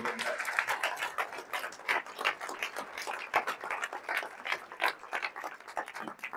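Audience applauding: dense, irregular clapping that thins out near the end.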